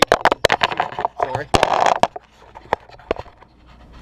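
Handling noise from a suction-cup camera mount that has lost its grip on an uneven countertop and is being grabbed and pressed back on: a quick run of sharp knocks and clicks with a brief scrape in the first two seconds, then a couple of isolated clicks.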